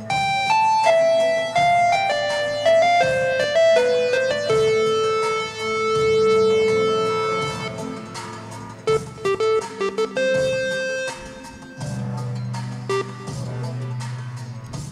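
Roland Fantom 7 synthesizer played live on one of its Scene patches: a lead line of single notes stepping down in pitch, one long held note in the middle, then more short notes, over low sustained bass notes.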